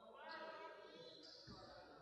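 Faint gymnasium room sound with distant voices, and one soft low thud about one and a half seconds in: a basketball bouncing on the court.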